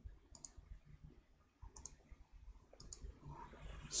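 Three faint computer mouse-button clicks, each a quick pair, about a second apart.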